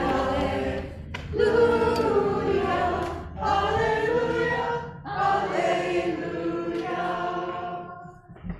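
Congregation singing a hymn together, line by line, with short breaks between phrases.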